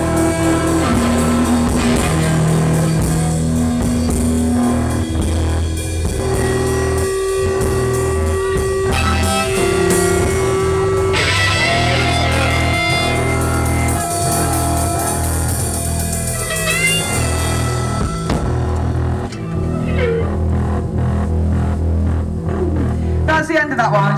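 Live rock band playing, with electric guitar over held low notes and drums. The music stops just before the end.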